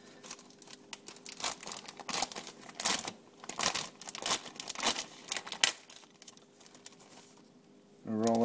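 Crinkling and tearing of the packaging of a store-bought pie crust as it is unwrapped, in irregular bursts that die away about six seconds in.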